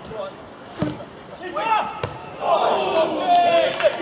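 Footballers shouting to each other on the pitch, the calls louder and more continuous in the second half. A single dull thud of a football being struck comes about a second in.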